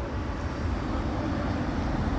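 Steady low background rumble with a faint hiss.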